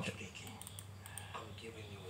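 A few faint taps on a laptop keyboard as the playback volume is turned down, with the trailer's audio faint from the laptop speakers.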